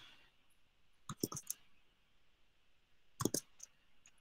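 Faint short clicks in two small clusters, about a second in and again about three seconds in, with quiet room noise between them.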